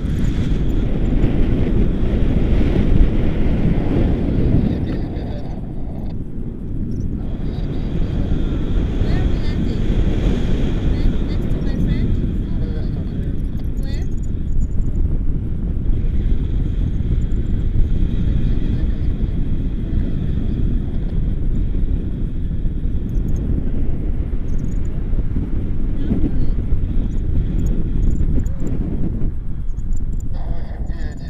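Wind rushing over the microphone of a camera on a tandem paraglider in flight: a loud, steady low rumble.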